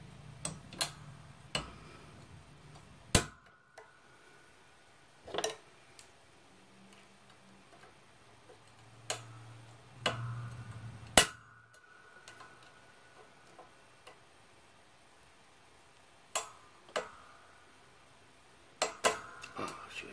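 Scattered sharp metal clicks and taps from snap-ring pliers working the steel retaining ring of a control arm bushing, about a dozen in all. Two louder clicks, about three seconds in and about eleven seconds in, leave a brief metallic ring.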